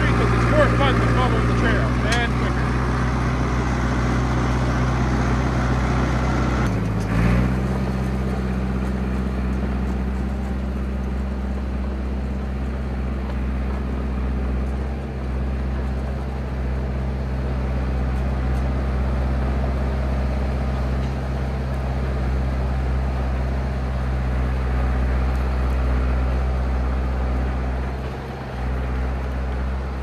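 Old crawler bulldozer's engine running steadily under load as it drives through deep snow, a low, even drone. The sound breaks off briefly and changes about seven seconds in.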